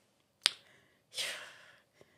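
A single sharp click a little before the middle, then a breathy exhale that fades out: a person's tongue click and sigh.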